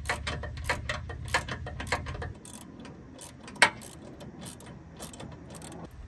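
Ratchet wrench clicking in quick, uneven runs as a bolt on the truck's front suspension is worked loose, with a low hum under the first two seconds and one sharper click about three and a half seconds in.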